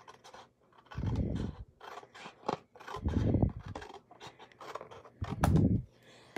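Scissors cutting through cardstock: three longer cutting sounds about two seconds apart, the last the loudest, with small clicks of the blades and paper between them.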